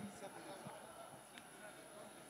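Near silence: faint background haze with one small click about halfway through.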